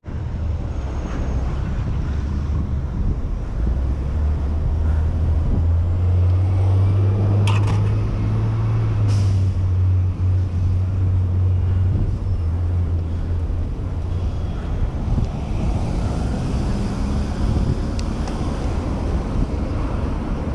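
Street traffic heard from a moving bicycle beside lines of cars: a low engine hum from a nearby vehicle swells up a few seconds in, is strongest in the middle and then fades. A couple of brief sharp sounds come around the middle.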